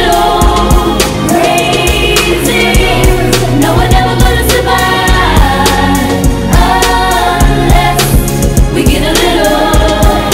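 Live amplified performance by a female vocal group singing in harmony into microphones, over a backing band with steady bass notes and a regular drum beat, played loud.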